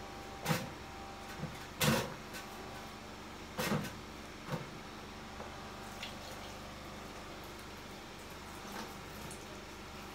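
Wet wig hair being squeezed and rinsed in a plastic basin of water: a few short splashes and squelches, the loudest about two seconds in.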